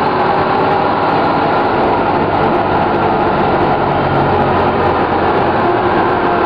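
Detroit Diesel Series 50 diesel engine of a 1997 Orion V transit bus running steadily. The bus has a slightly overblown turbocharger.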